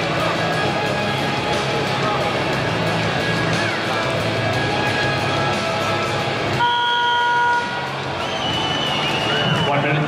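Arena music playing over crowd noise, which drops away about six and a half seconds in as the mat's timing horn sounds, a steady blast lasting about a second that ends the standing phase before the ground-position restart. A high whistle follows near the end.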